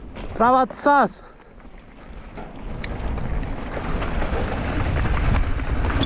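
A rider's two short shouts near the start, then a rush of wind on the camera mic mixed with mountain-bike tyres rolling over a dirt and rock trail, growing steadily louder as the bike gathers speed downhill.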